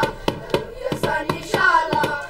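A group of children singing together, clapping their hands in a steady beat of about three claps a second.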